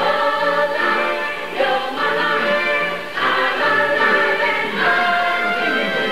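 Choral ensemble singing sustained notes over orchestral accompaniment in a live stage musical performance, the chords shifting every second or so.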